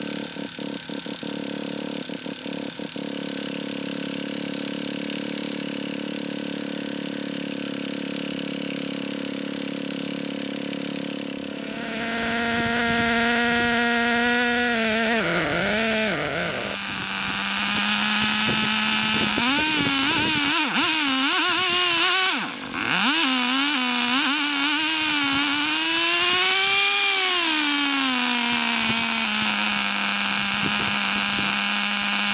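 Small two-stroke petrol engine of a large-scale RC Baja buggy running steadily. From about twelve seconds in it is revved, its pitch wandering up and down. It dips briefly about two-thirds of the way through, and near the end it rises and falls smoothly once.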